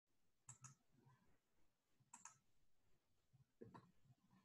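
Near silence broken by three faint pairs of short clicks, about a second and a half apart.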